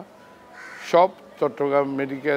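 A single harsh bird call, like a crow's caw, about a second in, followed by a man starting to speak again.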